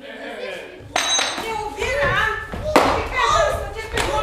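Actors speaking on stage, their voices carrying in the hall, with two sharp knocks, one about a second in and a louder one near three seconds.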